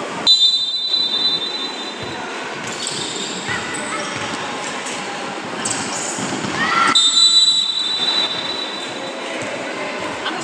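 Referee's whistle blown twice: a short blast just after the start and a longer one about seven seconds in. Behind it, players' shouts and the ball thudding on the court echo through the hall.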